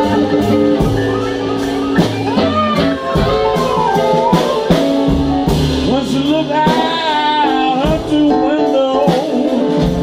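Live blues band playing: an amplified harmonica, cupped against the vocal microphone, plays a lead with sliding, bent notes over electric guitar, upright double bass and drums.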